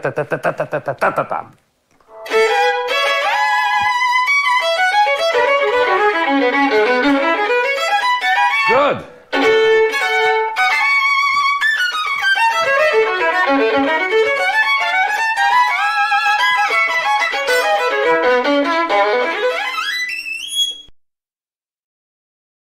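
Solo violin playing a fast, strongly rhythmic passage of short note groups. It falters briefly about nine seconds in, then climbs in a quick rising run and cuts off about a second before the end. A voice is heard briefly at the start, before the playing begins.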